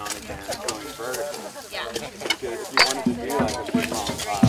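A group of people talking over one another, with scattered light clicks. Music with low bass notes fades in about three seconds in.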